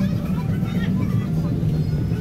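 A motor vehicle's engine running steadily nearby, a continuous low rumble, with faint voices in the background.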